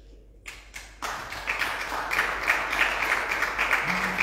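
Applause from a small group of members of parliament in the plenary chamber. A few separate claps come first, then dense, steady clapping from about a second in.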